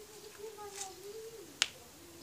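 A child's drawn-out voice, then a single sharp click about one and a half seconds in.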